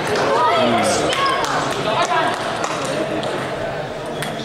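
Table tennis ball clicking sharply off bats and table a handful of times at an uneven pace, over many overlapping voices of people talking in the hall.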